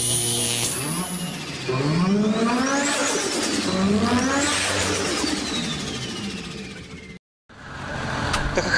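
Car engine sound in a channel intro: a steady idle, then two revs that climb in pitch and fall back, with a high whistling whine sweeping up and down. It fades out about seven seconds in.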